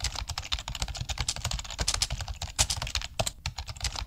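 Fast typing on a low-profile computer keyboard: a dense, uneven run of key clicks, with a few louder strokes mixed in.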